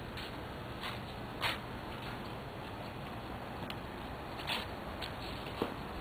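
Footsteps: a few soft scuffs over a steady hiss.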